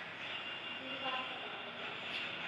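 Steady low room noise, with a faint voice in the background about a second in.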